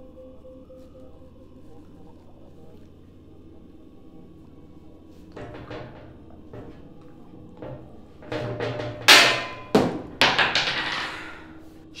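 Quiet background music with held tones, then a scatter of knocks from about five seconds in, building to several loud, sudden thuds between about eight and eleven seconds in.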